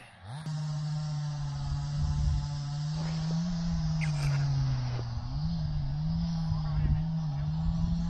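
Chainsaw running steadily, its pitch sagging and recovering a few times in the middle as the engine takes load cutting firewood.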